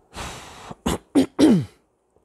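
A man takes a breath and clears his throat in three short bursts, the last one voiced and falling in pitch.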